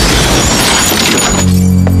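Glass shattering and scattering as a glass-topped coffee table breaks under a falling body, over background music. The crash dies away about a second and a half in, leaving a low sustained music chord.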